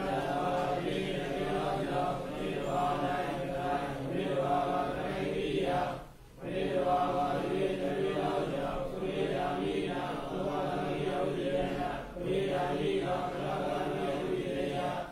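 Buddhist chanting in a steady monotone, held on level pitches in long phrases of about six seconds, with short breath pauses about six and twelve seconds in.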